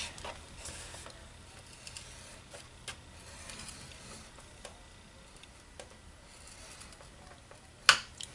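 Metal stylus of a Simply Scored scoring tool drawn along a groove of the scoring board, pressing a score line into cardstock: a faint scrape with light ticks, and a sharp click just before the end.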